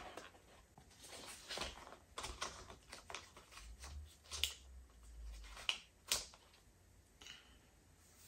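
Paper and card packaging of a watch band being handled and opened by hand: faint rustling with scattered small clicks and taps, two sharper clicks in the middle.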